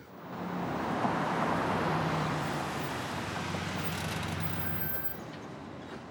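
A motor vehicle's engine and road noise, swelling over the first second, holding steady, then easing off about five seconds in.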